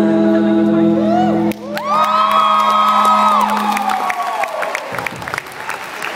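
Live band of electric guitars and bass holding the final chord of a song, cut off abruptly about a second and a half in. The audience then cheers with long high-pitched screams and some clapping.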